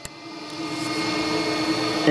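Electric secondary air injection pump running against its reconnected outlet tube, a steady strained hum that sounds like it is struggling, after a click as the tube's squeeze-type fitting goes back on. The air has nowhere to go, which suggests the air diverter solenoid is not opening.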